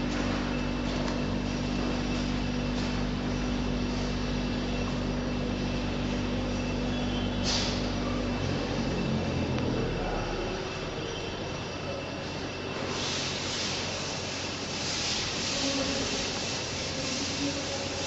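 Chisel mortiser running: a steady motor hum for the first eight seconds or so, then a noisier, even machine sound, with hissy bursts near the end.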